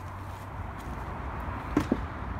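Steady low rumble of outdoor background noise, with two short clicks close together near the end.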